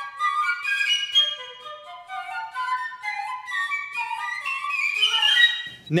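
Flute music: a melody that steps downward over the first couple of seconds, then climbs to its highest notes, breaking off just before the end.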